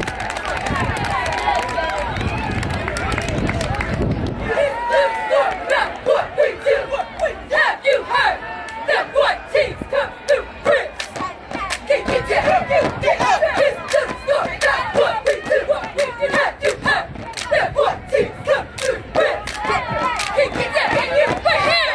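Cheerleading squad chanting a cheer in unison, punctuated by sharp rhythmic hand claps a few times a second. This starts about four seconds in, after a stretch of crowd noise.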